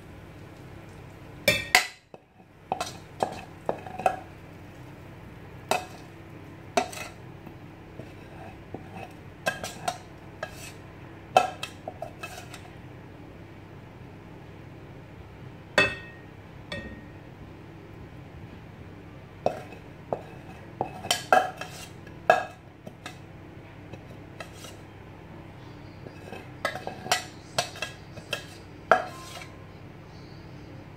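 A metal cooking utensil clanking and scraping against a pan while a vegetable stir-fry is stirred. The clanks come irregularly, in short clusters, with pauses of a few seconds between them.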